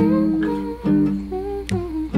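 Nylon-string classical guitar with a capo, fingerpicked: single notes and chords plucked about every half second and left to ring.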